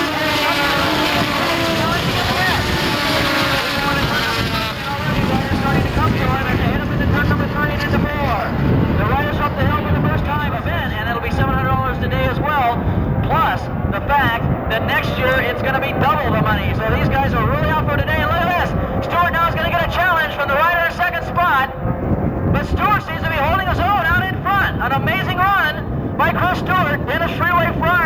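Several racing motorcycle engines at high revs passing together, their pitch rising in the first few seconds, then distant engines running on under a public-address announcer's voice.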